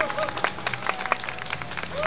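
Audience applauding with scattered, separate claps.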